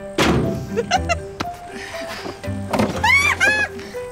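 A board thrown into a metal skip lands with a single heavy thunk just after the start, over background music. A woman laughs in high bursts about three seconds in.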